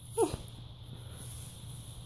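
A kitten's single short meow, falling in pitch, about a quarter second in, followed by a faint steady low hum.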